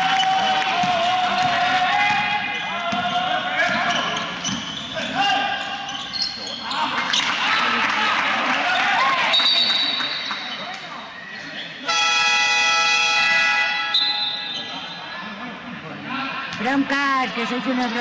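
Game horn sounding one flat, steady electronic blast for about two seconds, about twelve seconds in, over players shouting and a basketball bouncing on a hard indoor court with hall echo.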